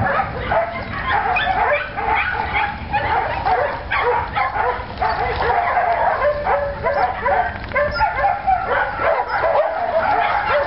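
Several dogs yipping and whining in excitement, short high calls overlapping without a break.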